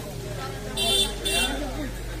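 Two short vehicle horn toots about half a second apart, high-pitched, over faint voices and a steady low hum.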